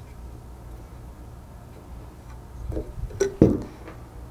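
Small metallic clicks and a louder knock near the end from handling a 1/16-inch hex key and a black spool knob on a metal control panel, over a steady low hum.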